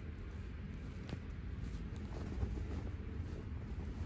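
Faint rustling and handling of a combat jacket's fabric over a low, steady room hum, with one faint click about a second in.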